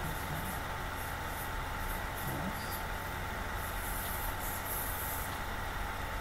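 Steady background hiss and low electrical hum of a lecture-room recording, with a thin high whine running through it. A faint, distant voice comes through briefly about two seconds in.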